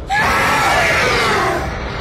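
A giant serpent's screech as a film sound effect: one loud, high cry that starts suddenly and falls in pitch over about a second and a half.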